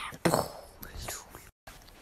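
A person's whispery vocal sounds without clear words, with one louder voice-like burst just after the start and a brief dropout to total silence about one and a half seconds in.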